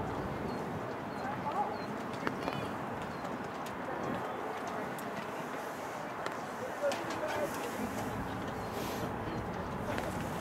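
Soccer-match ambience: a steady murmur of distant voices from players and spectators, with a few brief calls and faint knocks.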